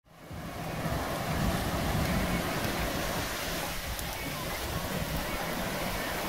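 Surf washing onto a beach, with wind rumbling on the microphone; the sound fades in over the first second and then holds steady.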